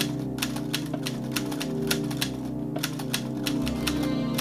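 Typewriter key-click sound effect: a quick, slightly irregular run of about four clicks a second, with a short pause about two and a half seconds in. It marks an on-screen caption being typed out letter by letter.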